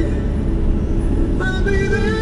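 Steady low rumble of a car's road and engine noise heard from inside the cabin while driving. Music with singing comes back in about one and a half seconds in.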